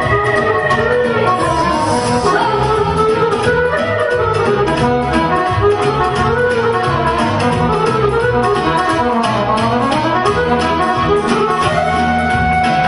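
Live band playing an instrumental passage of Romanian folk party music (muzică de petrecere): a winding lead melody over a steady bass beat.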